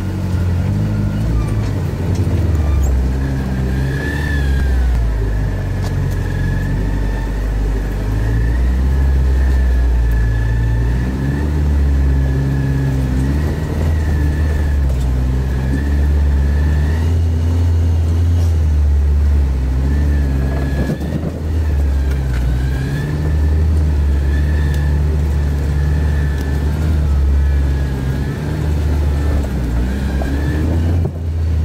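A 4x4's engine heard from inside the cab, working at low speed off-road, its note stepping up and down as the throttle is worked. A thin high whine runs over it for much of the time.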